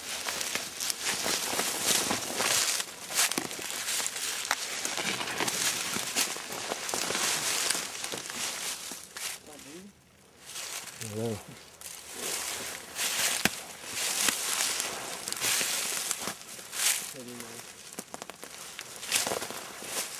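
Footsteps pushing through dry leaf litter and woody undergrowth, with leaves crunching and branches and stems brushing past, in an irregular stream of crackles, briefly easing off about halfway through.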